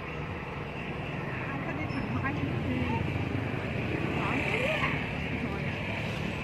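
Steady motor-vehicle engine noise that swells a little around the middle, with indistinct voices talking in the background.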